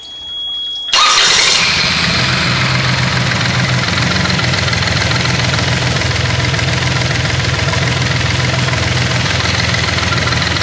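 Yanmar D36 diesel outboard motor being started: a high steady warning tone sounds while it is briefly cranked, then the engine catches about a second in and settles into a steady idle.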